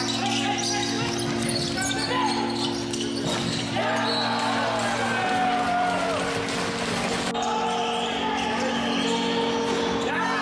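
Indoor arena sound of a box lacrosse game in play: a steady hum under short squeaks of players' shoes on the floor, knocks of sticks and ball, and players' shouts.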